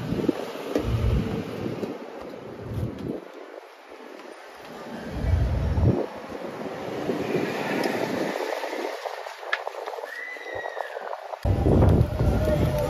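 Wind buffeting the microphone in low rumbling gusts over outdoor background noise, with a brief high squeak near the end.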